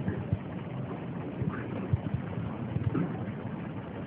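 A pause in speech on an old, band-limited recording: a steady hiss and low rumble of background noise, with a few faint clicks.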